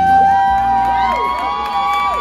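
Audience members whooping, several long overlapping held "woo" calls at different pitches that swoop up, hold and fall away, over low background music.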